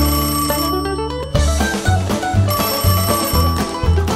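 Background music with a pulsing beat, and a telephone ringing over it in two bursts, near the start and again after the middle: an incoming order call.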